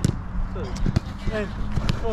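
A football being kicked back and forth in a quick passing drill: a few sharp kicks of the ball about once a second, with short shouted calls from the players between them.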